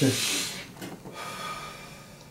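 A person's breath, a short hiss of air in the first half-second or so, then only faint sounds.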